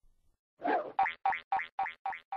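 Cartoon sound effect: a quick run of short pitched notes, about four a second, starting about half a second in.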